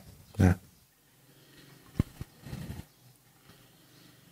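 A short spoken 'yeah', then quiet room tone broken about halfway through by a single low knock and a smaller click. A brief faint murmur of voice follows.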